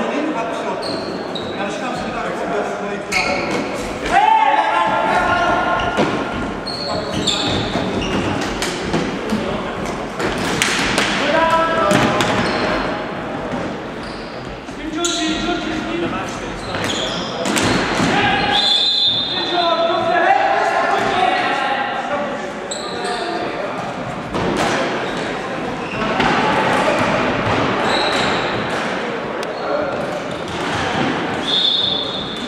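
Sounds of an indoor floorball game echoing in a large sports hall: players' shouts and calls scattered throughout, with frequent sharp knocks of sticks and the plastic ball against the wooden floor.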